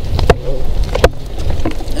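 Low rumble of a handheld camera microphone being jostled while walking on a rocky trail, with a few sharp clicks and knocks, the loudest about a second in.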